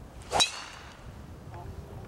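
Golf driver swung down through a teed ball: a short swish into a sharp, loud metallic crack of clubface on ball about half a second in, with a brief high ringing tail.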